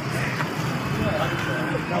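Faint voices of people talking in the background over a steady low hum.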